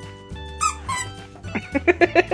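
Plush squeaky dog toy squeaking: one high squeak about half a second in, then a quick run of short squeaks, about seven a second, near the end. Background music plays under it.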